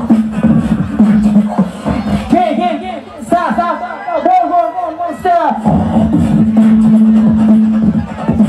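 Live beatboxing into a handheld microphone, amplified through a stage PA: rapid vocal drum hits over a held low bass hum. About two seconds in, the drums give way to a stretch of warbling vocal sounds that bend up and down, and the beat and bass hum return at about five and a half seconds.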